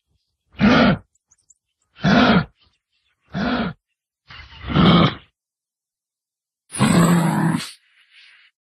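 Kangaroo grunting: five calls about one and a half seconds apart, each under a second long, the last two drawn out longer.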